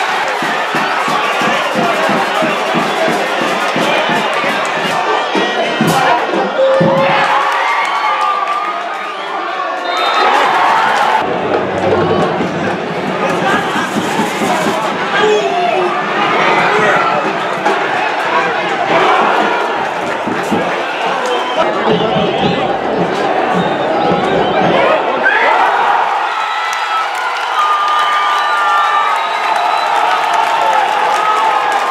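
Football stadium crowd cheering and shouting, a dense mass of many voices, with a brief lull about nine seconds in before it swells again.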